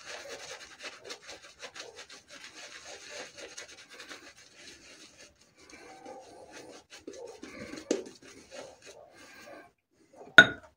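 Parker Variant adjustable safety razor with a stainless Elios blade scraping through lathered stubble in short strokes, a fine crackly rasp. A brief louder knock comes just before eight seconds.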